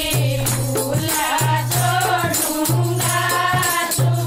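A group of women singing a Haryanvi folk song (lokgeet) in chorus, backed by rattling percussion that keeps a steady beat and a low note that recurs in long beats.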